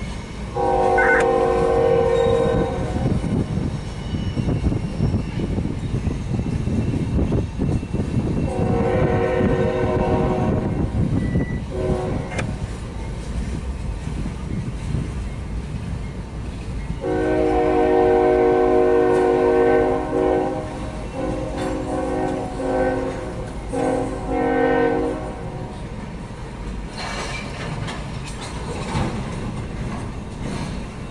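Freight train cars rolling past with a steady low rumble while a diesel locomotive's chime horn sounds repeatedly: a blast about a second in, another around nine seconds, then a long blast from about seventeen seconds breaking into shorter ones near twenty-five seconds.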